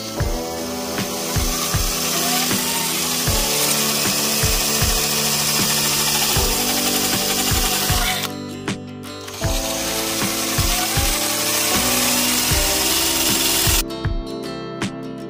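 Cordless drill spinning a small circular saw blade that cuts into the plastic bearing hub of a PC fan frame. The cutting runs in two long stretches with a pause of about a second a little past halfway, over background music with a strummed guitar and a steady beat.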